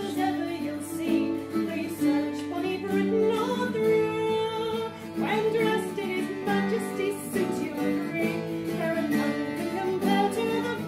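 A woman singing a folk song, with a man's voice joining, over a bowl-backed mandolin-family instrument played steadily as accompaniment.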